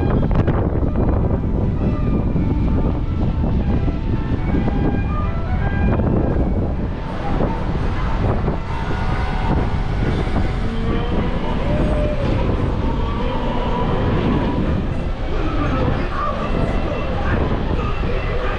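Wind rumbling on the microphone on an open ship's deck, loud and unsteady, with indistinct voices behind it.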